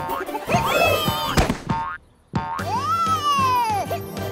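Cartoon soundtrack: bouncy music with comic sliding sound effects. A pitched sound slides up and down about half a second in, the sound drops out briefly just before the middle, and then a longer pitched slide rises and falls slowly.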